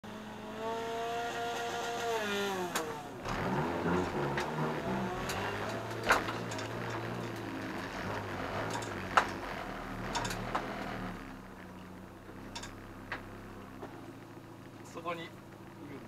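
Toyota Starlet EP82 race car's engine heard from inside its stripped cabin. The engine note falls away in the first couple of seconds, then the car rolls forward at low revs with a few sharp clicks and knocks. In the last few seconds the engine is left idling more quietly.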